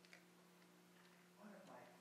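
Near silence: room tone with a faint steady electrical hum and a couple of soft clicks just after the start, then faint speech near the end.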